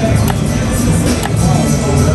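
Dragon Link Panda Magic video slot machine playing its game music and reel-spin sounds, with a few short clicks.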